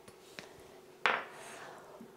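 A small dish knocks down onto a wooden chopping board once, about a second in, amid faint kitchen handling sounds.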